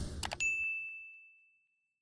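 Subscribe-button animation sound effect: two quick mouse clicks, then a single bright notification-bell ding that rings out and fades over about a second, following the tail of a whoosh.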